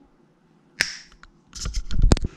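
A single sharp finger snap a little under a second in, followed near the end by several quicker clicks and low thumps.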